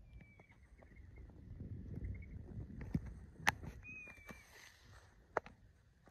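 Quiet outdoor background with a low rumble, broken by three sharp clicks or knocks in the second half. Two faint, thin whistled notes sound, one at the start and one about four seconds in.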